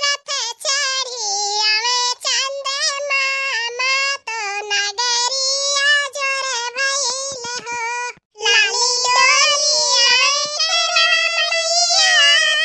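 A high-pitched, pitch-shifted cartoon voice singing a song in long wavering notes, with a brief pause about eight seconds in.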